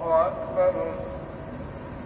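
Quran recitation: one voice chanting in long, wavering held notes. A phrase ends just after the start, a short note follows about half a second in, then a pause of about a second.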